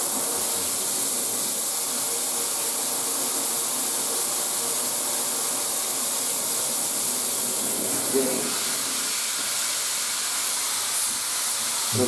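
Mirable shower head running at full flow, its straight spray hitting a plastic stool in a bathtub: a steady hiss of water. About eight seconds in, the hiss shifts slightly as the head is switched to its fine mist (ultra-fine-bubble) spray.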